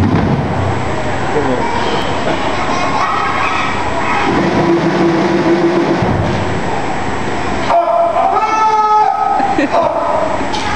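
Steady murmur of a theatre audience, with a voice calling out near the end.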